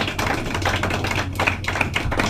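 Scattered hand claps from a small audience, irregular sharp claps over a steady low hum.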